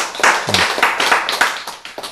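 A small audience clapping, with a brief laugh about half a second in; the clapping thins out and dies away near the end.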